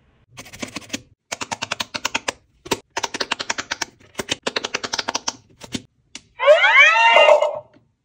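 Runs of rapid plastic clicking, about eight to ten clicks a second, from fingers pressing the buttons of a quick-push pop-it game console. Near the end the toy's speaker plays a short, loud electronic start-up jingle with gliding tones.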